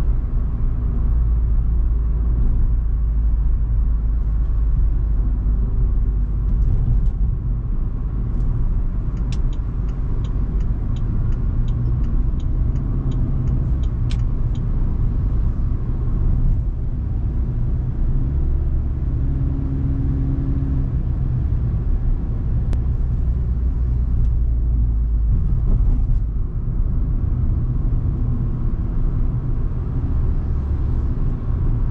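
In-cabin sound of a 2022 Proton Iriz 1.6-litre petrol hatchback with a CVT driving at road speed: a steady low rumble of engine and road noise. About a third of the way in, a rapid even ticking runs for about five seconds, around three ticks a second, like a turn-signal indicator.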